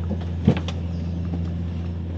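A car's outside door handle is pulled and the door latch clicks open about half a second in, with a second lighter click just after, over a steady low hum.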